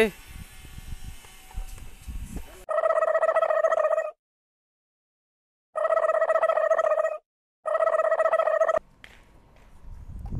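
A sound effect edited over the footage: three loud, held tones at one steady pitch, each about a second and a half long, cut apart by dead silence. Before them there are a couple of seconds of outdoor background noise with low thumps.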